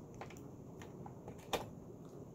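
Sewing machine clicking: a few light ticks and one louder click about one and a half seconds in, with no steady run of stitching.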